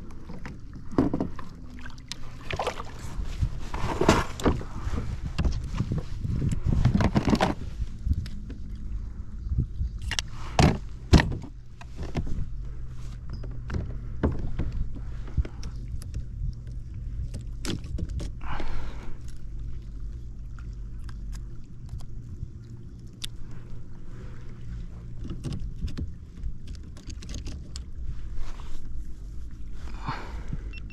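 Irregular knocks, clicks and rattles of gear being handled aboard a plastic fishing kayak, busiest in the first several seconds, with a steady low hum underneath.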